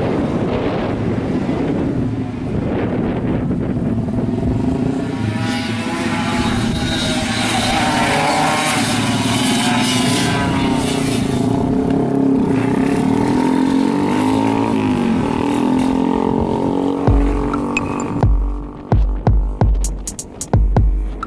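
Yamaha F1ZR two-stroke racing motorcycle engine running and revving, its pitch rising and falling through the middle. Near the end a thumping music beat comes in.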